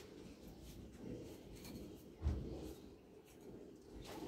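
Faint rustling of someone handling things, with one soft low thump a little over two seconds in.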